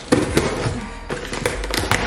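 A cardboard delivery box and its packing being handled and opened, giving a quick run of crackling snaps and taps, the loudest just after the start.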